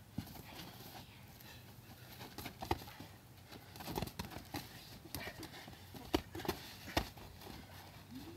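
Padded boxing gloves striking during sparring: a series of irregular dull thuds and slaps, a few of them sharper and louder.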